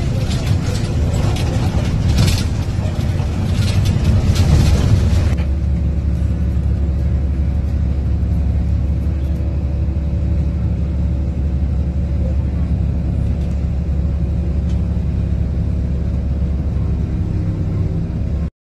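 Riding noise inside a moving vehicle: rumble and rushing road noise. About five seconds in it changes abruptly to a steady, even low engine hum.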